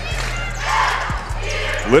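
Background music with a steady bass line over arena crowd noise, with a basketball bouncing on the hardwood court a couple of times midway through.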